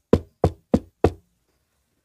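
Knocking: a quick run of sharp knocks, about three a second, stopping a little over a second in.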